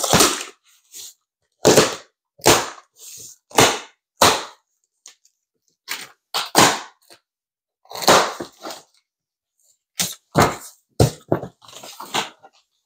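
A box cutter slitting the packing tape along the seams of a large cardboard box, and the cardboard flaps being pulled apart. It comes as a dozen or so short scraping, tearing rips with brief pauses between them.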